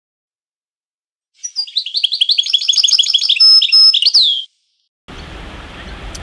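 A songbird singing a rapid run of high chirps and trills for about three seconds, ending on a falling note. The song is set against complete silence. Steady outdoor background noise starts about five seconds in.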